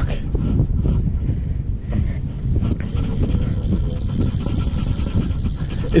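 Wind buffeting the camera microphone on an open boat: a steady, gusting low rumble.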